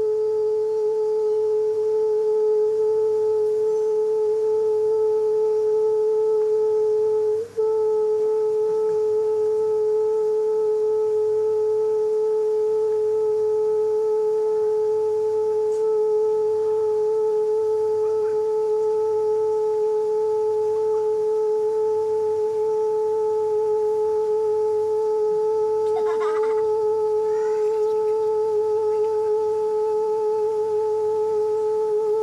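A singer's voice holding one long note at a single steady pitch, with a brief falter in level about seven and a half seconds in.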